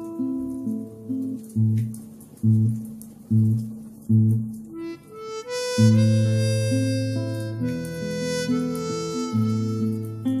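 Instrumental harmonica music with acoustic guitar accompaniment. In the first half single plucked bass notes sound about once a second, and about halfway in the harmonica comes in with long held notes.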